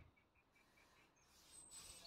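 Near silence with faint small-bird chirps: a quick run of about six short high notes in the first second, and a thin high whistle near the end.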